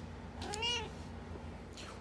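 A domestic cat meowing once, a short call whose pitch rises and then falls, about half a second in.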